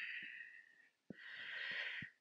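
A woman breathing audibly during a slow floor exercise. One long breath fades out about a second in, and after a short pause a second breath follows.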